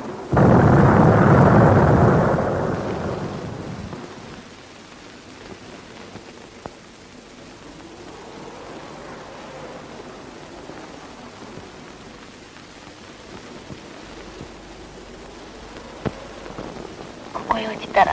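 A clap of thunder breaks suddenly about half a second in and rumbles away over the next three seconds, followed by steady rain.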